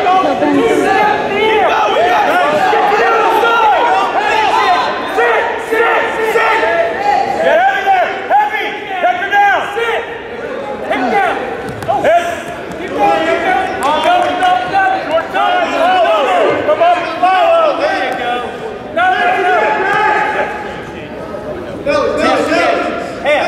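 Many voices shouting at once in a large gym: spectators and coaches yelling encouragement over each other during a wrestling bout, loud throughout.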